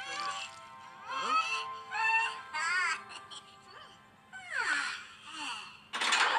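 Cartoon soundtrack: music with high, wordless cartoon-character voices in short sliding calls that rise and fall, one wavering about halfway through.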